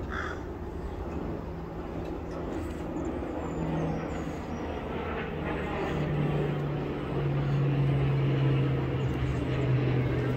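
A motor hums steadily at a low pitch. About six seconds in it steps slightly lower and grows louder.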